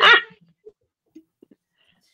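A high, wavering cry with swooping pitch that cuts off just after the start. The rest is near quiet, with a few faint soft knocks.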